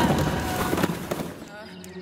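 Cartoon sound effect of a fall down a stone well: a rough, noisy crash that fades out about one and a half seconds in.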